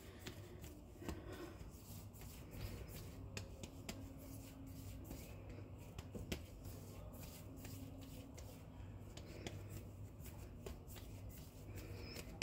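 Hands kneading and patting a soft yeast dough ball against a countertop: a quiet, irregular run of short pats and slaps.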